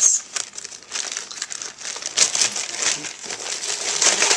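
Clear plastic packaging bag crinkling in irregular bursts as it is opened and a fabric tote is pulled out of it.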